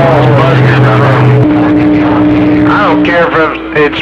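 CB radio receiving long-distance skip on channel 28: several stations transmitting at once, heard as garbled overlapping voices with steady low humming tones from their beating carriers. The tones shift about a second and a half in and drop out about three seconds in, leaving one voice clearer.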